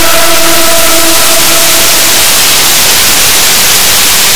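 Loud, even white-noise static hiss. A few held tones left over from the song fade out under it over the first two seconds.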